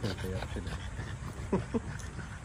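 French bulldogs play-wrestling on the ground, one of them giving two short vocal cries that fall steeply in pitch about one and a half seconds in.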